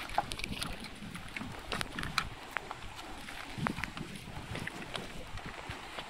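Water buffalo grazing close by: irregular short clicks and crunches as grass is cropped and hooves shift on the stones, over a low rumble of wind on the microphone.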